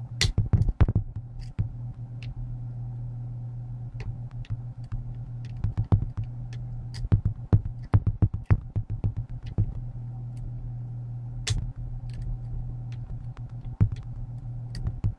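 Irregular metallic clicks and taps of a lever-lock pick and tension tool working inside a Union 2101 five-lever lock, over a steady low hum.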